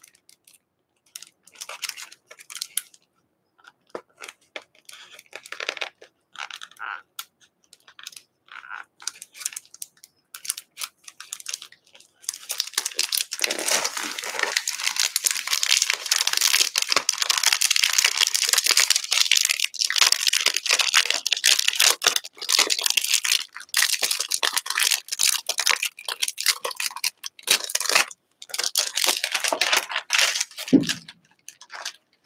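Thin clear plastic film crinkling as it is peeled off a new stencil and handled. There are scattered crackles at first, then continuous crinkling from about twelve seconds in.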